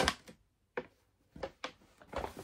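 Brown paper bag rustling as hands rummage inside it: a crinkle fading away at the start, then a few short rustles about a second in and near the end.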